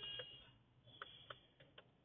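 Faint, scattered keystrokes on a computer keyboard: a handful of separate key clicks a few tenths of a second apart.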